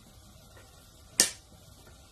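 A single sharp click about a second in: a small disc magnet snapping onto the end of a battery.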